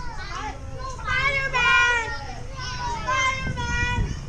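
Children's high-pitched voices shouting and calling out, loudest a little under two seconds in, over a steady low rumble.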